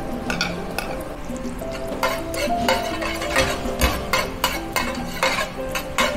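Chopped garlic sizzling in melted butter in a stainless steel frying pan, with a metal spoon clinking and scraping against the pan as it is stirred. The clicks come thicker from about two seconds in.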